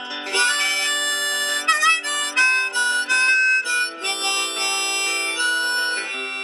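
Harmonica solo over strummed acoustic guitar in a song's instrumental break: held notes, with a quick warbling run about two seconds in.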